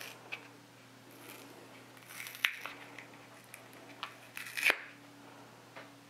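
Quiet handling and rustling of a Tetra Pak tofu carton being opened by hand, with two sharper crinkles about two and a half and four and a half seconds in, over a faint steady hum.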